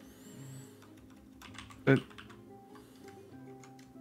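Computer keyboard typing, a scatter of soft key clicks from about one and a half seconds in, over quiet background music of held notes. A single spoken word cuts in near the middle and is the loudest thing.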